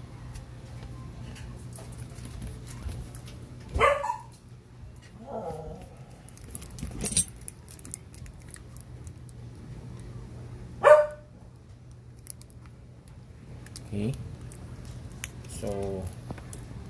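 A dog barking in the background: about five short barks spread several seconds apart, the loudest about four and eleven seconds in.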